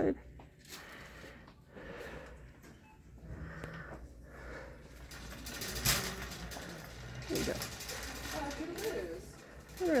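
Grocery store background with a steady low hum and faint voices, and a single sharp knock about six seconds in.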